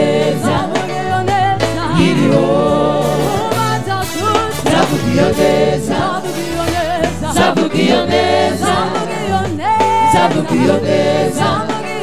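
Live gospel music in a reggae style: several voices singing together over electric bass guitar, keyboard and a steady beat.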